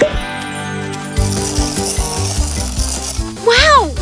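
Cartoon background music with a sparkling, shimmering magic sound effect and an even beat. Near the end a girl's voice gives one rising-and-falling 'ooh' of amazement.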